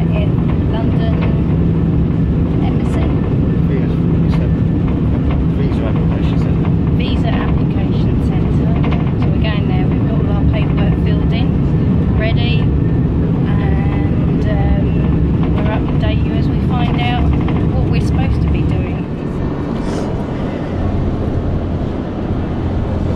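Steady low rumble and hum of a moving train heard inside the passenger carriage, with voices talking over it. The train noise cuts off about nineteen seconds in, giving way to quieter street sound.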